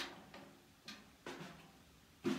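Snare drum tapped lightly with a drumstick: about four separate taps, the first the loudest, the later ones with a short pitched ring from the head.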